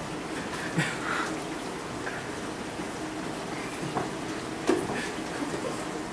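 A steady low hiss with a few faint gulps and handling sounds as eggnog is drunk from a carton.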